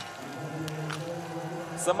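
A few sharp cracks of small-bore biathlon rifles firing at the range, over a steady low humming tone.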